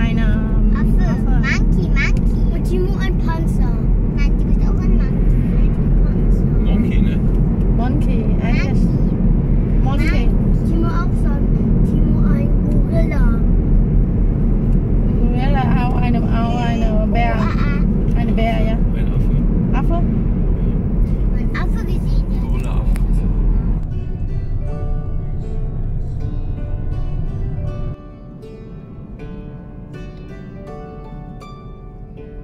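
Steady road and engine rumble inside a moving car's cabin, with voices talking over it. Near the end, plucked-string background music comes in, and the road noise cuts off suddenly, leaving only the music.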